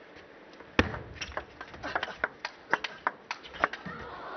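A table tennis serve and rally: the celluloid-plastic ball clicks off the rackets and bounces on the table in a quick run of sharp clicks. The serve is the first and loudest, about a second in, and the exchange stops shortly before the end.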